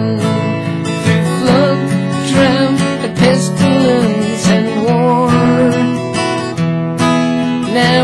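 Acoustic guitar strummed steadily, with a man's voice singing a country-style melody over it.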